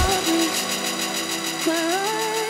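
Electronic dance music breakdown: the kick drum and bass drop out at the start, leaving a sustained, buzzy melodic line that slides between notes.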